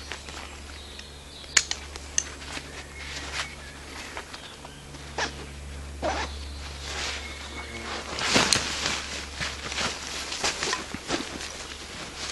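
A rucksack being taken off the shoulders and handled: fabric and straps rustling, with scattered small clicks and knocks. The rustling is loudest about eight seconds in, and there is a steady low hum throughout.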